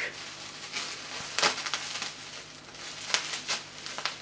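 Plastic bubble wrap crinkling and rustling as it is handled and cut away with scissors, with a few sharper crackles, about one and a half seconds in and twice near the end.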